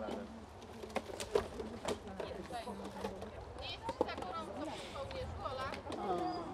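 Quiet, indistinct voices of people talking nearby, with a few sharp clicks or knocks scattered through it and a low rumble underneath.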